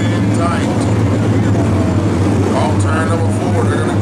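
A pack of Super Street dirt-track race cars running together around the oval, their engines making a loud, steady drone. Indistinct voices come through over it a couple of times.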